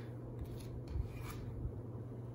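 Tarot cards being handled: a few soft swishes and rubs of card stock, over a steady low hum.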